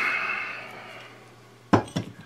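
Metal frame of an open-frame pull solenoid clinking as it is handled out of its cardboard box, with a ringing that fades over about a second. Then a sharp knock near the end as it is set down on a wooden desk.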